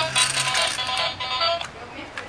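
Tinny electronic toy melody, like a ringtone, dying away near the end, with a low hum that stops about half a second in.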